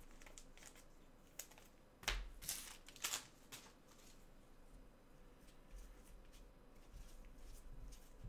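Faint handling noise of trading-card packaging worked by gloved hands: light rustling and scraping of cardboard and foam. A few sharper clicks and scrapes come between about two and four seconds in.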